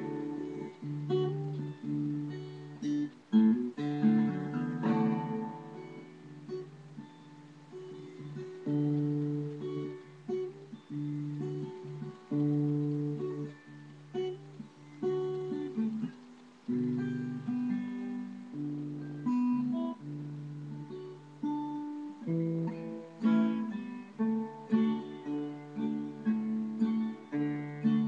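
Acoustic guitar playing the instrumental intro of a classic country song, strummed chords over changing low bass notes.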